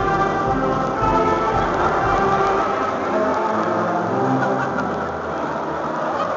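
A large mixed choir singing a chorale in a big reverberant church. The sustained singing trails off about halfway through and gives way to the rustling noise of a big crowd.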